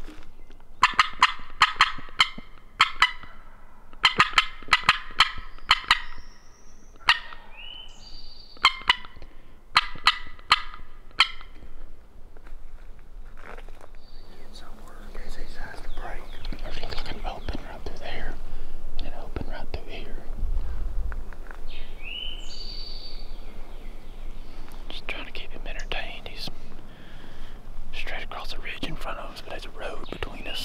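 A wild turkey gobbler gobbling repeatedly, loud rattling bursts in the first twelve seconds or so, answered by short yelp-like notes from a hunter's turkey call. Later, steady rustling of footsteps through pine-straw and leaf litter.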